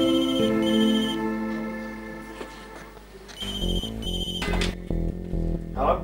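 Telephone ringing in the British double-ring pattern: two pairs of short rings about three seconds apart, over background music that picks up a beat partway through.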